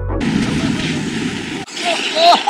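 Snowboard sliding and scraping over groomed snow, with wind rushing over the camera's microphone; the steady rush starts suddenly as music cuts off and breaks briefly near the end.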